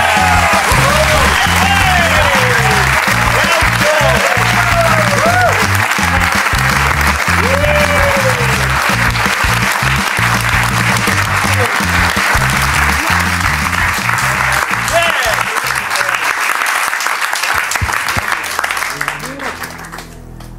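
Studio audience cheering and applauding, with whoops, over show music with a pulsing beat. The applause dies away near the end.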